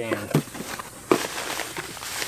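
Bubble wrap and cardboard packaging crackling and rustling as a wrapped item is lifted out of its box, with a few sharp clicks.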